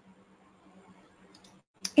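Faint computer mouse clicks, a few small ticks in the second half, over a low steady electrical hum.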